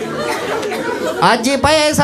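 Audience chatter in a large room, then, about a second in, a man's loud voice over a handheld microphone with sweeping rises and falls in pitch.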